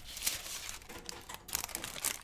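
Vinyl LP's inner sleeve sliding out of its cardboard jacket as the record is handled, with paper rustling and crinkling and a few sharp crackles.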